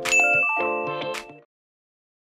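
A bright bell ding, a notification-bell sound effect, rings over the last notes of the outro music. The ding and the music cut off together, suddenly, about one and a half seconds in.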